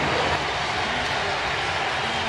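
Ballpark crowd cheering steadily as a home run leaves the park.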